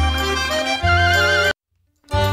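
Belarusian folk dance music: a bass note on each beat under a wavering, trilling high melody line. It cuts off abruptly about one and a half seconds in, leaving silence.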